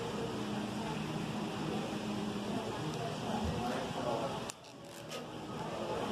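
Restaurant dining-room background: indistinct voices over steady room noise. About four and a half seconds in, the level drops suddenly and a few sharp clicks follow.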